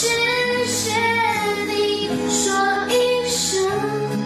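A song: a young male singer's high voice singing a melody of held notes over instrumental backing.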